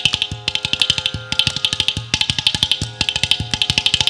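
Mridangam and ghatam playing a fast percussion passage of sharp strokes, several a second, with a deep bass stroke roughly once a second, over the steady drone of a tanpura.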